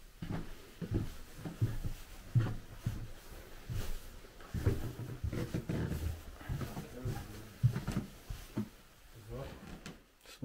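Low, indistinct talking in a small room, mixed with footsteps and bumps from walking and handling the camera.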